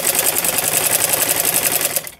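Old black domestic sewing machine stitching a seam in cotton kurti fabric: a fast, even run of needle strokes that stops suddenly at the end.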